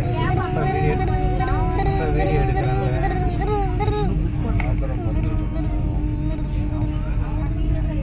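Steady rumble of a Vande Bharat Express coach rolling slowly, with a constant hum, heard from inside the coach. Passengers' voices, including a child's high voice, carry on over it.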